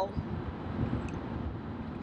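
Steady low road noise inside a moving car's cabin at highway speed, with a faint click about a second in.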